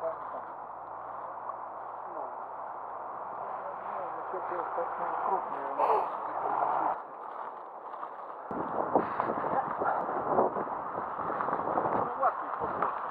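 Men talking, with footsteps and rustling in dry leaf litter. The sound changes abruptly about seven seconds in.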